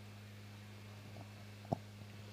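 Faint steady electrical hum from the commentary sound system, with a single short click near the end.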